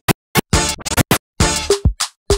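A track scratched by hand on the jog wheel of a Pioneer DJ DDJ-FLX4 controller running Serato DJ Pro: the music is cut into short choppy bursts with sudden silences between, some carrying a kick-drum hit.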